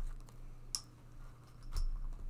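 Light clicks and taps from a tarot card deck and a crystal being picked up and set aside, with two sharper clicks about a second apart, over a faint low hum.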